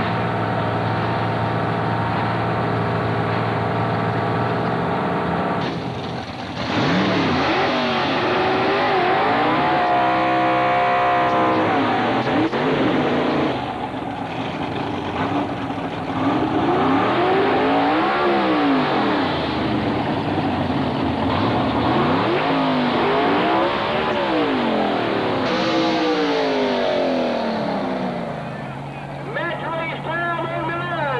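Drag-racing cars' engines idling steadily at the starting line, then launching at full throttle about six seconds in. The engine pitch climbs and drops again and again as the cars pull through the gears, over several runs. Near the end an engine settles back to a steady idle.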